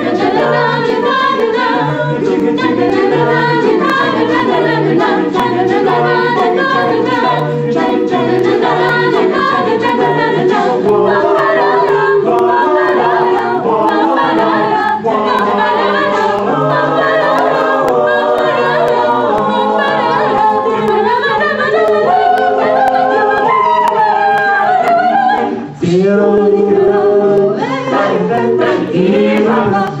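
Mixed a cappella choir of young men and women singing in close harmony, with a low bass part pulsing on a steady beat under the upper voices. Near the end the sound drops out for a moment and the voices come back in on a new chord.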